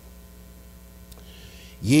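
Steady electrical mains hum picked up by the pulpit microphone's sound system, with a faint click about a second in; a man's voice begins reading near the end.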